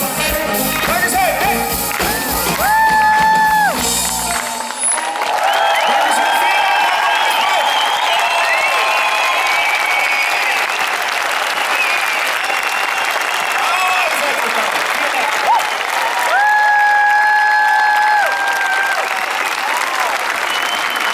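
A live pop band plays the last few seconds of a song, which stops about four and a half seconds in. An outdoor crowd then claps and cheers, with a few long, high held calls among the applause.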